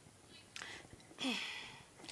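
Faint, brief voice sounds: a short whispered or murmured syllable about a second in, with a falling pitch, among low background quiet.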